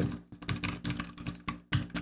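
Fast typing on a computer keyboard: a quick, uneven run of keystrokes.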